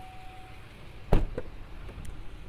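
A pickup truck door shut with a heavy thump about a second in, followed by a lighter knock from a door latch.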